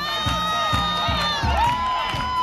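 Upbeat dance music with a steady, fast beat, mixed with a crowd cheering and children shouting.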